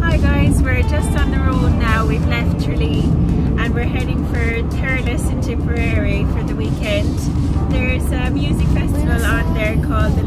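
Steady low rumble of a campervan's engine and tyres, heard from inside the cab while it drives along, under a woman talking.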